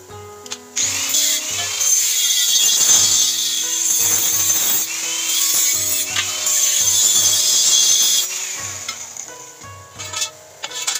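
Handheld angle grinder with a cutting disc cutting through a metal channel bar. It starts about a second in, runs for about seven seconds and stops near the end.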